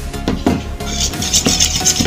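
Metal spoon stirring in a steel bowl, clinking and scraping against the sides as glue and detergent solution are mixed into slime. A few sharp clinks come first, then quick repeated scraping strokes from about a second in.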